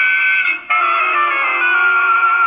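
HMV acoustic cabinet gramophone playing a 78 rpm record of dance-band music through its horn. The sound is thin and band-limited, with no deep bass or high treble, and the music drops briefly about two-thirds of a second in before carrying on with held notes.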